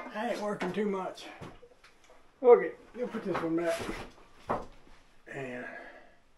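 A man's voice in three short, unclear bursts, with a few sharp knocks between them; the loudest is about two and a half seconds in.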